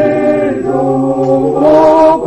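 A choir of voices singing a song together, holding long notes, with a louder swell near the end.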